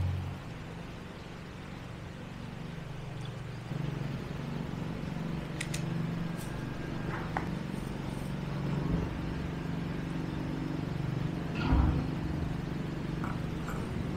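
A steady low machine hum running in the background, with a few faint clicks around the middle and a brief louder knock about twelve seconds in.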